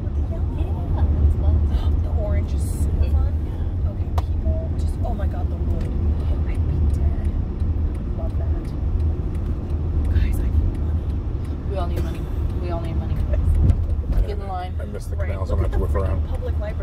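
Steady low rumble of road and engine noise inside a moving car's cabin, with quiet voices now and then.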